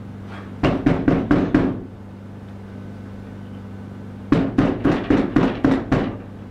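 Loud knocking on a door: two bouts of about six quick knocks, the second starting about two and a half seconds after the first ends, announcing a visitor who will not be turned away.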